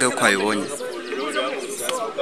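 A man speaking, his voice rising and falling in pitch.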